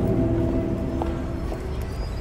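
Sustained music tones fading out, with a few light clicks of a fingerboard's deck and wheels knocking on a wooden ramp and metal rail.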